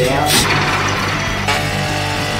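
Background music with a steady bass line, over a short burst of voice at the start.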